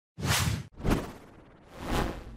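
Three whoosh sound effects for an animated text intro. The first cuts off sharply, the second fades away, and the third swells up near the end.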